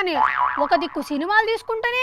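Comic 'boing' sound effect: a springy tone that wobbles up and down several times in the first second, with a woman's voice speaking over its tail.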